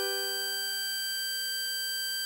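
Electronic, keyboard-like music playback: one high melody note, G on blow hole 9 of the tutorial's harmonica part, held steadily over a sustained G major chord and slowly fading.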